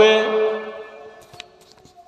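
A man's voice holding the last syllable of a spoken sentence on a steady pitch, fading out within about a second. A quiet pause with a few faint clicks follows.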